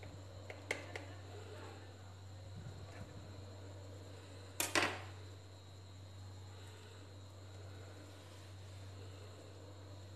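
A kitchen knife clicking against a ceramic plate while dhokla is cut and a piece freed: a few light clicks about a second in, then a louder double clack about halfway through. A steady low hum runs underneath.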